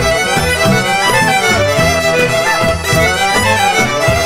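Serbian folk dance music for a kolo, a fiddle carrying a fast melody over a steady bass beat.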